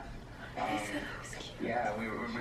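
Quiet speech from a television playing an interview.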